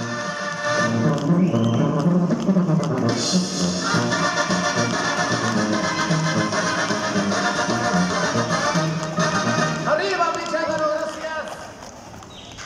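Mexican banda music playing: brass over a steady, pulsing bass line. It drops away near the end.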